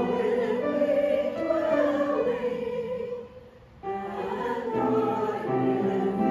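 A small mixed church choir singing an anthem in parts, with held notes and a short break between phrases a little past the halfway point.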